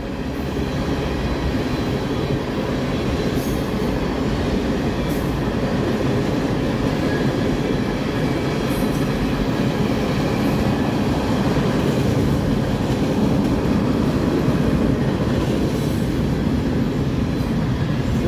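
Freight train cars, tank cars and then empty railroad-tie cars, rolling past steadily: a continuous rumble of steel wheels on rail with a few faint clicks.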